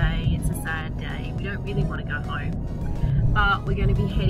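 A woman talking over background music, with the steady low road rumble of a Ford Ranger's cabin underneath.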